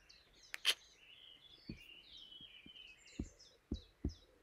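Faint chirping of small songbirds, in short repeated notes. Two sharp clicks come about half a second in, and a few soft low thumps follow later.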